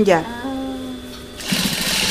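Industrial sewing machine stitching through fleece in one short, fast run near the end, with a faint steady high whine from the machine throughout.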